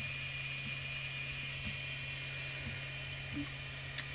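3D printer running: a steady low hum with a steady high-pitched whine over it, and a few faint soft ticks.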